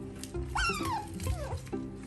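A pet animal's high call, twice: a long one about half a second in that rises quickly and then falls away, and a shorter falling one a little later, over background music.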